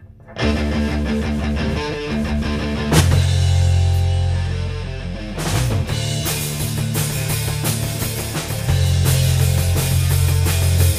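A rock band's electric guitar and bass guitar start a song about half a second in, with a loud accent about three seconds in; the drum kit joins at about six seconds and the band plays on together.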